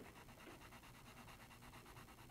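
Faint scratching of a charcoal pencil hatching quick, even back-and-forth strokes on sketchbook paper.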